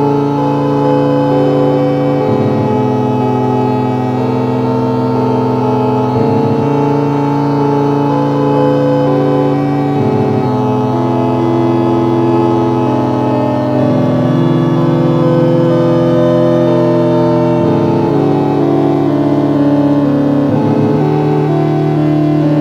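Instrumental track from a lo-fi black metal demo: held synthesizer chords, moving to a new chord about every four seconds, with no drums.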